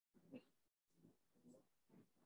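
Near silence, broken by four faint, brief sounds about half a second apart.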